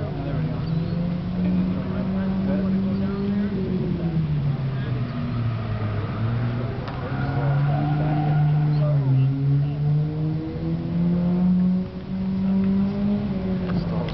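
Go-kart engines running on the track, their pitch rising and falling as the karts speed up and ease off, with more than one engine heard at once at times.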